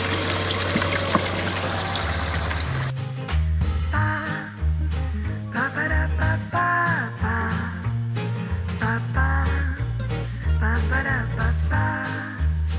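Water running and splashing through a Desert Fox spiral gold wheel, cut off suddenly about three seconds in by background music with a steady beat and a bass line.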